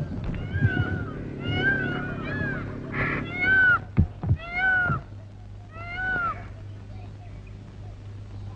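A run of about eight short animal cries, each rising and falling in pitch, over a low steady hum, with a few dull thuds in between.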